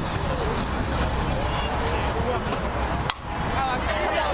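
One sharp crack of a softball at home plate about three seconds in, over the chatter of spectators.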